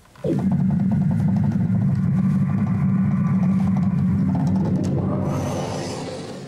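Synthesizer sonification of radio waves from the galaxy UGC 6697: a low, rapidly pulsing drone with a few steady overtones, starting abruptly about a quarter-second in and fading over the last second.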